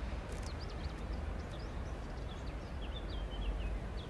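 Outdoor street ambience: a steady low rumble with faint, short bird chirps scattered through, growing more frequent in the second half.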